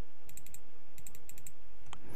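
Soft clicking of a computer keyboard being typed on, in three short runs of keystrokes.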